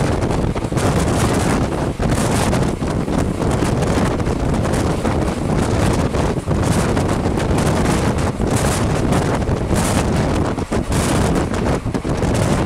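Heavy wind buffeting the microphone held out of a fast-moving express train's window, in uneven gusts, over the steady rumble of the LHB coach running on the rails.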